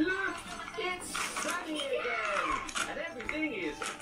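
A person talking in a high voice.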